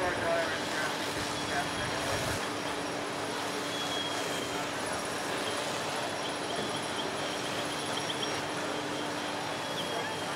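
Steady drone of fire apparatus engines and pumps running at a fire scene, a low hum holding one pitch under an even rush of noise, with a hose stream spraying water.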